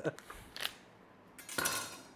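Plastic bacon package being pulled open by hand: a small click about half a second in, then a short crinkling rip of the plastic near the end as the seal gives way.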